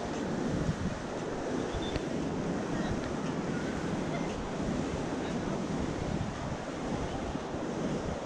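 Strong sea surf breaking on a sandy beach, a steady wash of noise, with wind buffeting the microphone.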